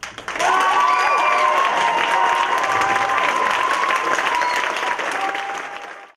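Audience applauding and cheering, with a few high whoops in the first couple of seconds; the clapping tails off near the end.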